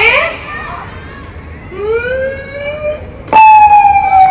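Voices calling out with long drawn-out pitched cries: a rising call about two seconds in, then a sudden loud high call near the end, held and slowly falling in pitch.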